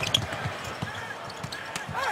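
A basketball bouncing on a hardwood court, a string of short sharp knocks, with arena crowd noise behind.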